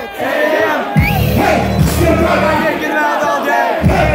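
Live hip-hop concert through the PA: shouted vocals and a crowd yelling along, while the heavy bass beat cuts out twice, briefly at the start and again near the end.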